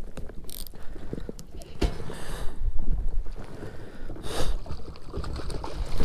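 Baitcasting reel being cranked to retrieve a lure, its gears clicking, with knocks of hand and rod handling and a few short bursts of hiss.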